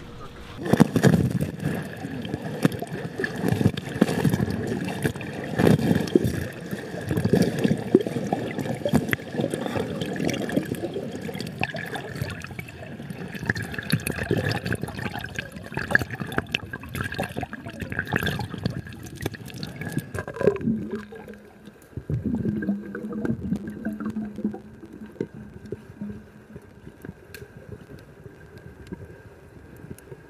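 Pool water splashing and churning as swimmers stroke through it, partly heard from underwater. About two-thirds of the way through it eases to quieter bubbling and gurgling.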